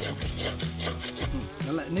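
A steel slotted spoon scraping and stirring thick snail curry against the side and bottom of a metal cooking pot, in a quick run of short rasping strokes.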